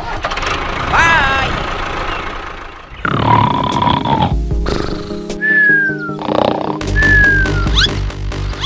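Background music with a cartoon snoring sound effect: twice, a low snore followed by a falling whistle.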